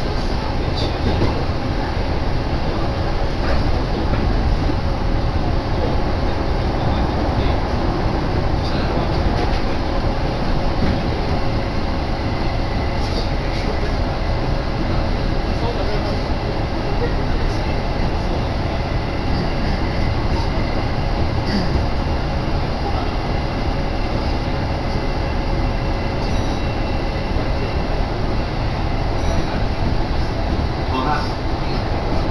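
Steady running noise of a Kintetsu Nagoya Line commuter train heard from inside the carriage while it travels between stations: a continuous low rumble with a faint steady hum and a few scattered light clicks.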